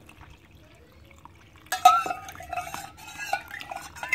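Water pouring faintly into flour in a glass mixing bowl, then, about two seconds in, a run of loud ringing clinks and scrapes of steel utensils against the glass bowl.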